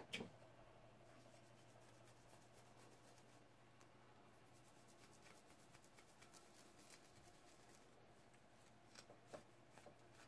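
Faint, irregular rubbing and scuffing of an acetone-soaked rag against a painted tumbler as the paint is wiped off. There are a few soft ticks at the very start and again near the end.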